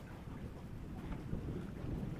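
Wind buffeting the microphone: a steady low rumble with no distinct events.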